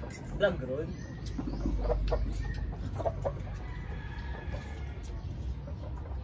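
Chickens clucking, with a few short clucks.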